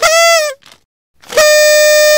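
Horn sound effect sounding twice: a short toot that sags in pitch as it ends, then, after a pause of under a second, a longer steady toot.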